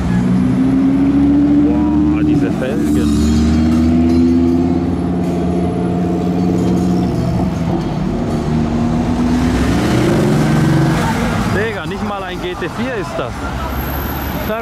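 Lamborghini supercar engine accelerating past and away, its pitch climbing and then dropping back in steps as it shifts up. It fades about eleven seconds in.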